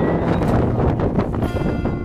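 Wind buffeting the microphone in a steady rumble, with background music running under it.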